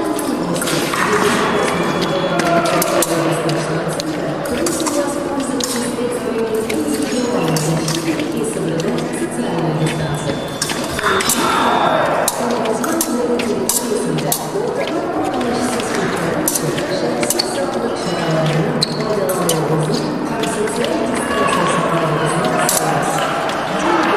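Music and voices echoing through a large hall, with sharp clicks and taps scattered throughout from épée blades meeting and fencers' feet on the piste.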